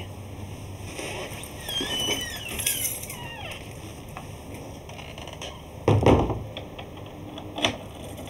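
A glazed wooden front door being closed: a heavy thud as it shuts about six seconds in, then a sharper click near the end as the latch catches. Softer squeaks come earlier, as the door is moved.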